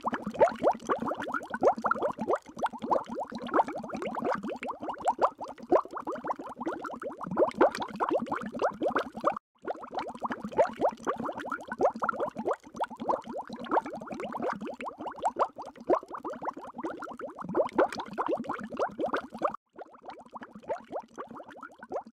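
Underwater bubbling sound effect: a dense, continuous stream of small bubbles. It cuts out briefly twice, about ten seconds apart.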